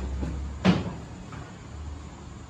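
A single sharp metal knock about two-thirds of a second in: a steel ladle striking the side of a large metal cooking pot as the stew is stirred.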